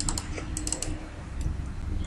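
A few light clicks of computer keys in two quick clusters within the first second, over a faint low hum.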